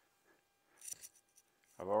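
Glass baking dish being handled on a granite countertop: one short, faint scrape about a second in, followed by a couple of light clicks.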